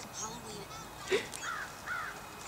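Crows cawing a few times outdoors, the loudest call about a second in.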